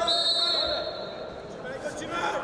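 A referee's whistle blows once, a steady shrill tone lasting about a second, over men's voices shouting in the hall.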